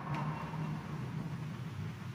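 Faint room noise of a church during a lull, with a low murmur and a single light click just after the start, as the congregation sits down.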